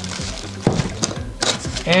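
Clear plastic packaging bag crinkling, with a few sharp crackles, as the bagged cable inside is lifted and set down, over steady background music.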